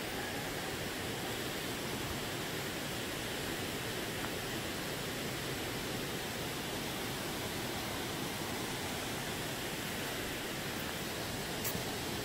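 Steady rushing of a waterfall and its river, heard from the trail through the trees as an even, unbroken wash of noise, with one faint click near the end.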